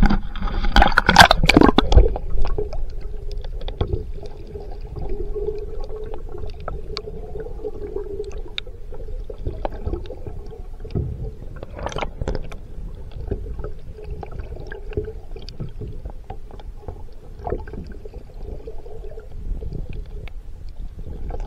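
A loud splash and sloshing of water as the camera goes under, then muffled underwater sound: bubbling, small scattered clicks and a faint steady hum.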